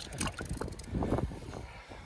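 Wind buffeting the microphone in a low, steady rumble, with brief rustles and knocks as hands pull a fishing line up through a hole in the ice.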